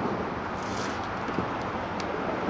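Steady outdoor background noise with a hiss like road traffic, and a few faint light clicks from the kayak's sail lines being handled.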